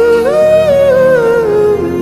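Slow worship music: a wordless hummed melody held over sustained chords, rising to a held note and then stepping downward through the second half.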